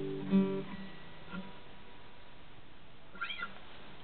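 Acoustic guitar finishing a song: the last chord rings and one final note is plucked, fading out within about half a second. Then the room is quiet, apart from a brief high, wavering sound near the end.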